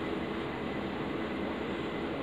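Steady background hiss and hum of a small room, with no distinct sound standing out.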